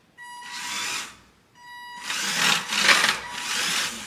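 Small electric drive motor and plastic gearbox of a 3D-printed RC truck whirring with a high whine, in two short bursts and then a longer, louder run as the truck is driven back and forth.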